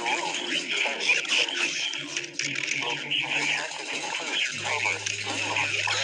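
Weather radio broadcast playing through a laptop speaker: an automated voice reads out a severe thunderstorm warning over a hiss. A steady low hum joins about four and a half seconds in.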